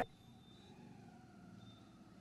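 Very faint background noise with a few faint steady tones, close to silence, right after a man's speech cuts off at the start.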